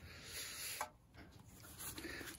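Faint rubbing and scraping for about a second, as the breaker bar's socket is pulled off the 22 mm strut-to-knuckle nut it has just broken loose.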